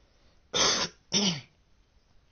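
A man clearing his throat twice, two short rough bursts about half a second apart, the second ending in a brief voiced grunt.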